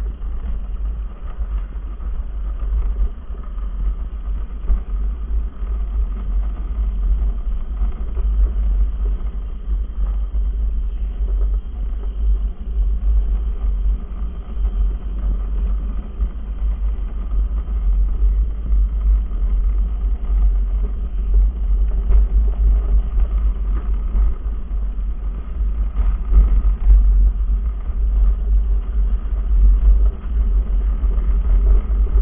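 Steady low rumble of a gravity luge cart's wheels rolling down a concrete track at speed.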